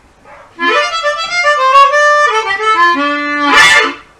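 Chromatic harmonica playing a blues lick. It is a quick run of notes climbing upward, then stepping back down to a held low note, and ends in a brief loud burst near the end.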